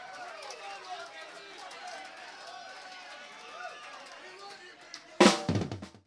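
Concert crowd shouting and whooping, many voices overlapping, at a modest level. About five seconds in, a single loud hit with a quickly falling pitch, cut off at the end.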